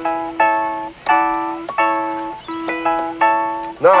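A musical instrument played slowly and simply: a chord struck about every 0.7 s over a held low note, each one fading out. It is a beginner's attempt to copy a rock-and-roll part he has just been shown, which is judged wrong straight away.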